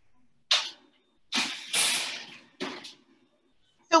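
A metal baking tray of yams being put into a kitchen oven: a brief noise about half a second in, then about a second of sliding, scraping noise, then a shorter noise near three seconds in.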